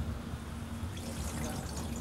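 Steady commercial-kitchen background: an even hiss with a low hum under it, no distinct events.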